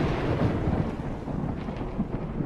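Thunder rumbling after a clap, slowly dying away over a steady hiss of rain.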